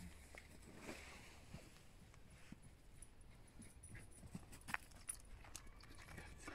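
Near silence, with a few faint scattered clicks and scuffs of steps on a paved path, one slightly louder a little before the end.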